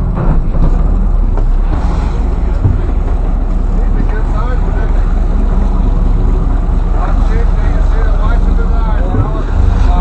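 Boat engine running with a steady low hum, with people talking in the background.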